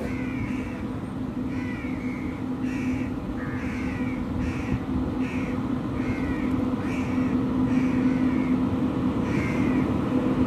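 Crows cawing over and over, about one or two calls a second, over the steady low hum and rumble of an approaching electric locomotive that grows slightly louder.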